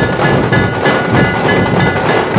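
Dhol-tasha troupe playing: large barrel dhol drums and tasha drums beating a fast, dense rhythm, with a ringing high metallic tone repeating over the drumming.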